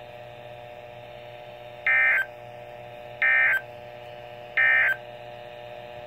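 NOAA Weather Radio receiver playing the three short SAME digital data bursts, evenly spaced, that make up the end-of-message code closing an emergency alert test, over a faint steady hum from its speaker.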